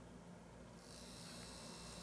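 Small brushed DC motor starting a little under a second in and running slowly with a faint, high whir. It is switched only partly on through an N-channel MOSFET whose gate is floating, set off by a finger touch.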